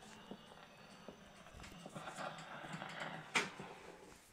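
Quiet, irregular clicks and knocks with a faint hiss, and one sharp click about three and a half seconds in: handling noise and steps on a hard floor as the camera is carried.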